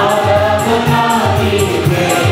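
A mixed worship choir singing a Telugu Christian praise song into microphones, with instrumental accompaniment and a steady beat.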